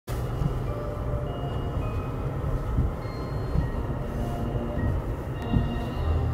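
Steady low rumble of a vehicle driving slowly, heard from inside, with faint scattered musical tones over it.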